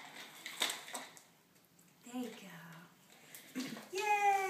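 Quiet room with brief murmured voice sounds, including a short falling 'oh' about two seconds in, and a light click a little over half a second in.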